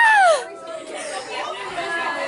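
A girl's high-pitched yell of 'Ah!' that falls in pitch and breaks off about half a second in, followed by quieter background chatter of many voices.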